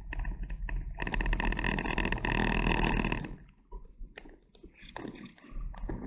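A CB radio in a lorry cab hisses and buzzes with a burst of static about a second in that lasts about two seconds, with a shorter, weaker burst near the end. The cab's low engine rumble runs underneath.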